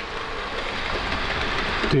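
An OO gauge Lima Class 117 DMU model, DCC-converted, running along the track: a steady whirring run of its motor and wheels on the rails.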